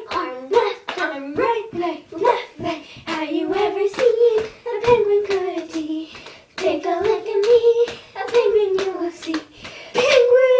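Two girls singing a children's action song together without accompaniment, in high young voices with a gliding melody, broken by frequent sharp slaps from the dance moves.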